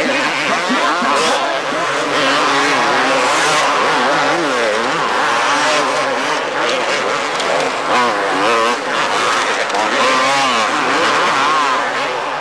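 Several two-stroke supercross motorcycles racing, their engines revving up and down over and over as riders throttle on and off through the jumps and turns, with the engine notes overlapping.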